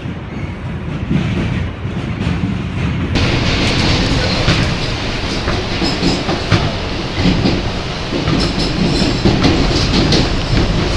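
An R160 New York subway car running along the track, heard from inside the car: a steady rumble with scattered clicks from the wheels on the rails. About three seconds in, the running noise jumps suddenly louder and brighter, and stays that way.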